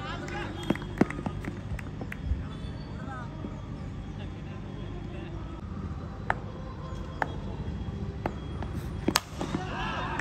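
Outdoor cricket-ground ambience with faint crowd chatter and a few sharp knocks. The loudest crack comes about nine seconds in, a bat hitting a tennis ball for a six.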